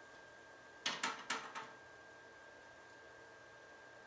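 Four light, sharp taps in quick succession about a second in, over quiet room tone with a faint steady high-pitched hum.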